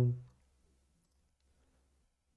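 The tail of a drawn-out spoken word fades out in the first moments, then near silence with a few faint computer mouse clicks.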